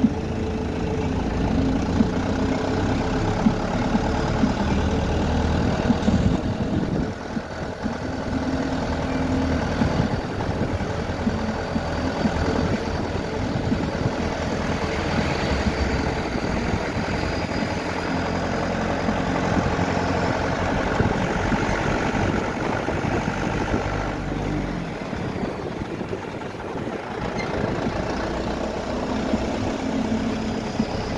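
Car engine running and tyre and road noise as the car drives along, heard from inside the car: a steady low rumble that eases off briefly a few times.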